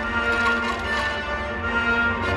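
Film soundtrack music with long held tones, playing through a cinema's speakers and picked up from the audience seats.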